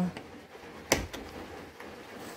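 A single sharp plastic snap about a second in, followed by a fainter click: a plastic push-in retaining clip on a 2019 Kia Optima's door trim piece popping free as the piece is pried off with a plastic trim tool.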